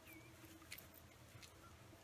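Near silence: faint outdoor background with a brief faint chirp near the start and a couple of faint ticks.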